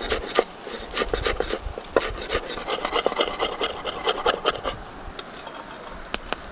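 Large kitchen knife chopping green onions on a wooden cutting board: a quick, uneven run of knocks of the blade against the wood.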